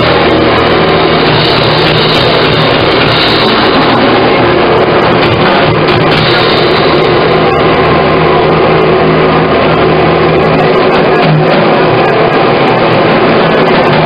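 Post-punk band playing live, heard through a loud, distorted bootleg recording: dense guitar and bass with a held low note that changes about ten and a half seconds in.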